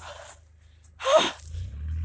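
A person's short breathy vocal sound with a falling pitch about a second in, over the low hum of a Kawasaki Mule Pro FXT side-by-side's engine idling, which grows a little louder near the end.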